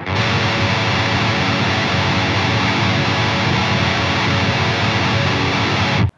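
Distorted electric guitar strumming a minor triad fretted 4-2-1 on the low E, A and D strings, repeated in a fast, even down-down-up-down black-metal strumming rhythm. It cuts off suddenly at the end.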